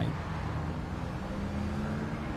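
Steady low rumble of street traffic, with no distinct events.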